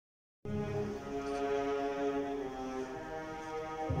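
Orchestral music accompanying a ballet, cutting in about half a second in with sustained chords; a deep bass note enters near the end.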